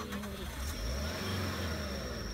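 Suzuki Jimny's engine revving under load as the 4x4 strains to climb out of a muddy stream bed, with a thin steady high whine joining under a second in.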